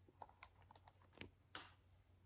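Near silence with a handful of faint, light clicks of handling noise.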